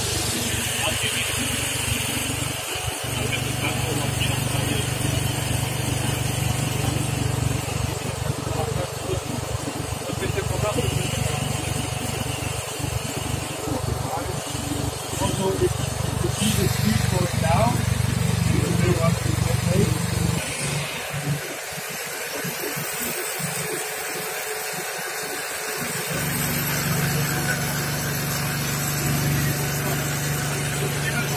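Engine-driven equipment of a fiber-optic cable blowing setup running with a steady low hum while cable is being blown in. The hum cuts out for about five seconds some twenty seconds in, then comes back.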